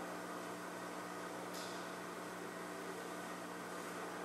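Faint steady hiss with a low electrical hum: room tone.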